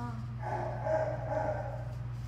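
A dog's drawn-out whining cry, starting about half a second in and lasting about a second and a half in two parts, over a steady low hum.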